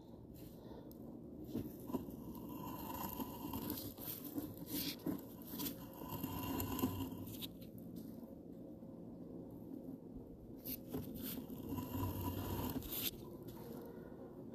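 Faint, irregular scraping and crunching with scattered clicks as a sewer inspection camera's push cable is drawn back and fed onto its reel.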